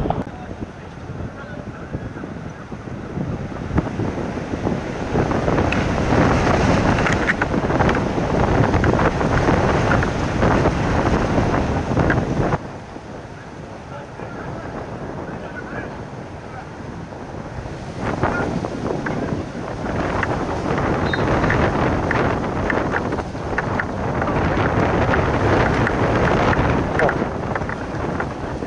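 Wind buffeting a handheld camera's microphone in loud, gusty rumbles. It drops abruptly about twelve seconds in and builds back up around eighteen seconds.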